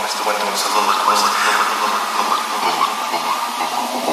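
Techno DJ mix in a filtered breakdown: the bass and kick are cut out, leaving a steady noisy whooshing wash in the mids and highs.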